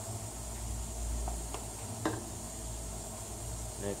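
Dried dill weed shaken from a spice jar onto fish, a few faint light ticks around the middle, over a steady low hum.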